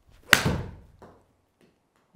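Golf iron striking a ball off a hitting mat: a single sharp, loud crack with a short decaying ring in the room, and a much fainter tick about a second in.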